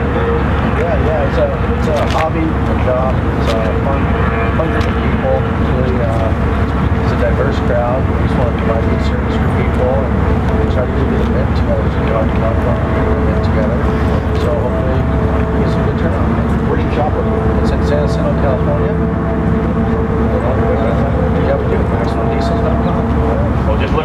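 An engine running steadily and loudly, without revving, with people's voices over it.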